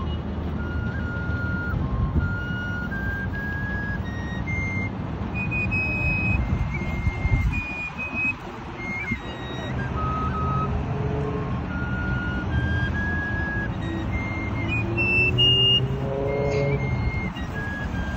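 A high, pure-toned melody on a small wind instrument, single clear notes stepping up and down about every half second, over a steady low rumble. A slow rising tone joins near the end.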